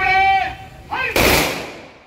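A drawn-out shouted drill command, then a police firing party's rifles fired together in a single volley just over a second in, its echo dying away.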